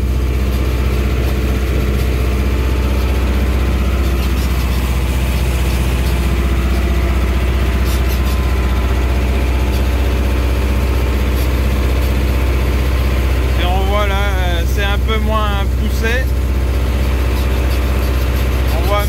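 Tractor engine heard from inside the cab, running steadily as the tractor drives across the field.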